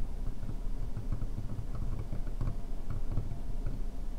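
Steel carving knife cutting the border of a small stone name seal clamped in a seal-carving vise: faint, irregular scratching ticks over a low rumble.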